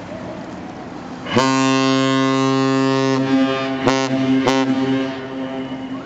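A Great Lakes freighter's horn sounding one long, deep blast of about three and a half seconds, starting suddenly about a second and a half in and fading out near the end.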